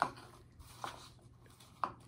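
Faint, soft rustling of crinkled shred filler being pushed down into a small cup by hand, with a few short, faint clicks around the middle and near the end.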